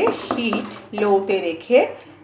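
A spatula scraping and stirring a thick spice paste around a wok, with a person talking over it.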